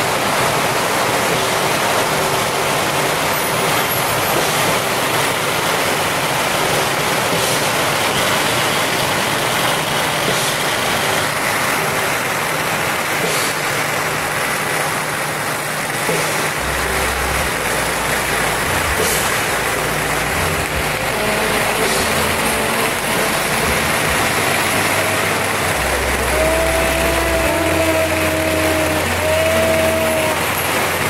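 A long string of firecrackers crackling in a dense, continuous barrage, with a few louder bangs standing out.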